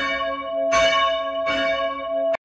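A single church bell rung by its rope, struck about three-quarters of a second in and ringing on between strikes, with strokes about a second and a half apart.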